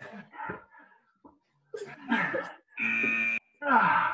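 Strained grunts and groans from people doing the last seconds of plyometric push-ups. About three seconds in, a short electronic interval-timer beep sounds, marking the end of the work interval. A falling groan follows near the end.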